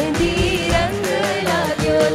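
Garba song played by a live stage band over loudspeakers: a singer's ornamented, gliding vocal line over a steady drum beat.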